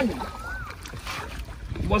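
Wooden paddle stroking through lake water from a small boat, with low wind rumble on the microphone.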